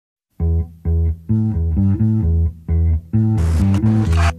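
Background music: a low riff of short, chopped notes starts after a moment of silence, and drums with cymbals come in near the end.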